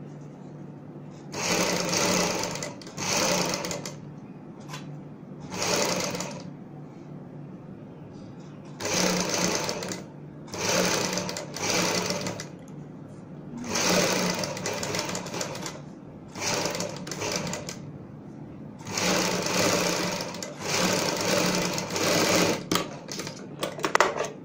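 Sewing machine stitching a pearl-beaded lace edging onto a fabric strip. It runs in about a dozen short runs of one to one and a half seconds each, stopping briefly between them.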